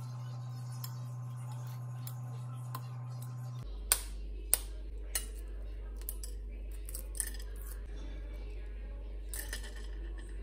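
Hard-boiled eggshell being cracked and peeled off by hand: faint crinkling with a few sharp crackles, the loudest two about four and four and a half seconds in. A steady low hum runs underneath and drops in pitch just before the first crackle.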